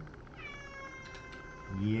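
A single long, high-pitched cry, falling slightly in pitch at first and then held for about a second and a half.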